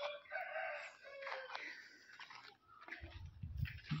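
A rooster crowing: one call about a second long at the start, then fainter sounds and a low rumble near the end.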